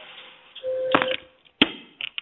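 Telephone-line sounds: a short steady beep starting about half a second in, mixed with clicks, then a sharp click and a few faint clicks, over a low line hiss.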